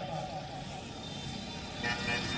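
Low, even background noise with faint, indistinct voices in it.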